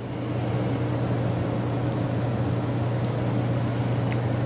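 A steady low hum with a hiss over it, swelling slightly in the first half second and then holding level.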